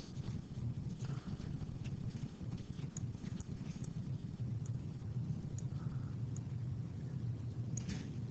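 Low, steady room rumble with a few faint, scattered clicks.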